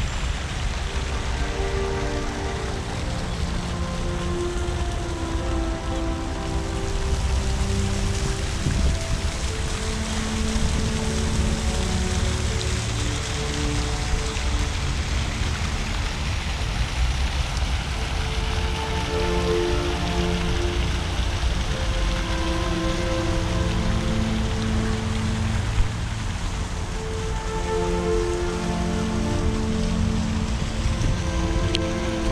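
Fountain jets splashing steadily into a stone basin, with slow music of long held notes playing over it.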